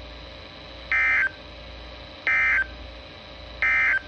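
Three short, identical bursts of warbling digital data tones from a Midland NOAA weather radio's speaker, a little over a second apart. This is the SAME end-of-message code that closes the flash flood warning broadcast.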